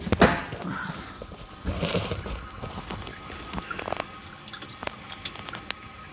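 GE GDF630 dishwasher filling: water running and dripping into the tub before the wash pump starts. A sharp knock just after the start, then scattered clicks and rubbing, come from the phone being handled against the machine.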